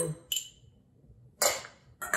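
Two clinks of a metal spoon against bowls: a faint tick about a third of a second in, then a louder, sharp clink that rings briefly about a second and a half in.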